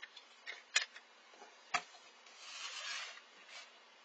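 Hand handling objects on a workbench: a few sharp clicks and taps as things are picked up and set down, then a brief rustling scrape about two and a half seconds in as a paper plate is slid across the cutting mat.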